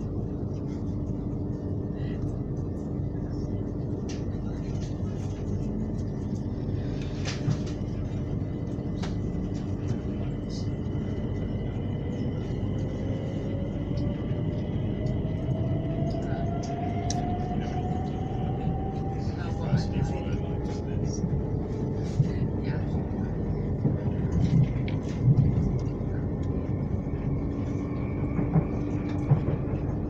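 Inside a moving electric commuter train: a steady rumble of wheels on track under a constant hum, with a motor whine rising in pitch through the middle as the train picks up speed. Scattered clicks and light knocks from the track come and go, more often in the second half.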